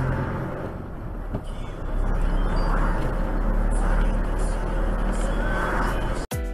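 Steady low engine and road rumble inside a moving vehicle, picked up by its dashcam, with a faint muffled voice now and then.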